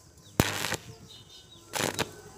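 Stick-welding arc on thin square steel tubing, struck in short bursts: a sharp click and a brief burst of arc noise about half a second in, and another burst near the end. The welder is starting and stopping the arc in short strikes, a technique for welding thin-walled tube without burning through.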